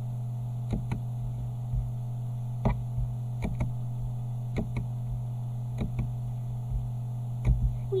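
Steady low electrical hum on the recording, with about a dozen short, sharp clicks scattered through it from a computer mouse in use.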